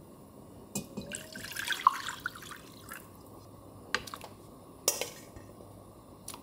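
Stock poured from a stainless steel bowl into a small black pot, splashing for about a second and a half, followed by a few sharp clinks of utensils against the pot.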